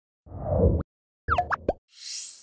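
Electronic sound effects of a news channel's end-card animation: a low swell that stops abruptly, then about half a second later a quick run of four or five popping blips that slide in pitch.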